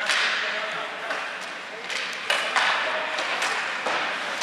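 Ice hockey play off a faceoff: sticks clacking on the puck and ice, and skate blades scraping and carving across the ice. It comes as a string of sharp hits, each followed by a hissing scrape.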